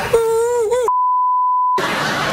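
A brief, wavering high-pitched voice, then a steady single-tone TV censor bleep lasting under a second, with all other sound blanked out beneath it to cover a swear word.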